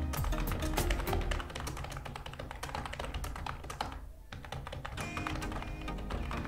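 Computer keyboard being typed on in quick runs of keystrokes, with a short break about four seconds in, over steady background music.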